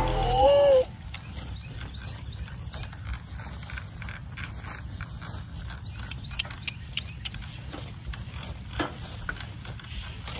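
Horse-drawn cart moving across a grass field: a quiet, steady low rumble with scattered light clicks and knocks from the cart and harness.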